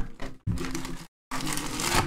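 Cardboard trading-card box being slid out of its sleeve and handled, with irregular crackling and crinkling of card stock and packaging. The sound cuts out completely for a moment about a second in.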